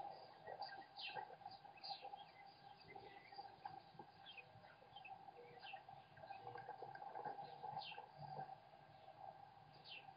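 Faint bird chirps: short, high, falling notes, a few each second at uneven intervals, over a steady faint hum.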